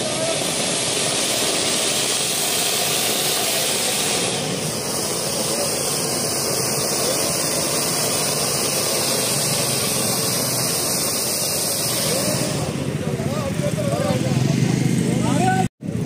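Ground fountain fireworks spraying sparks with a loud, steady hiss, over the chatter of a crowd. The hiss fades out about three-quarters of the way through.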